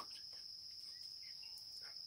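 Steady high-pitched insect trill, like crickets, with a faint click right at the start.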